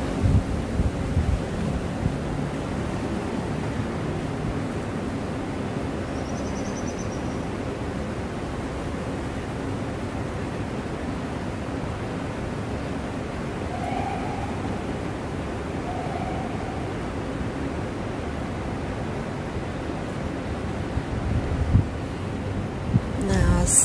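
Steady rushing outdoor background noise of wind on the microphone, with a few low buffets in the first couple of seconds and a few faint short tones around the middle.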